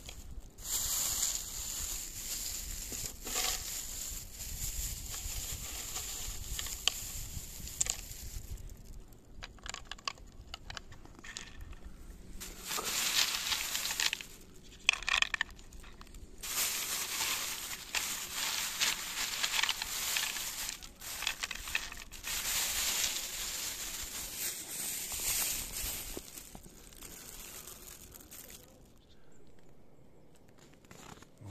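Crunching, rustling and scraping handling noises in irregular bursts with short pauses, as a wooden squirrel feeder is cleared of snow and covered.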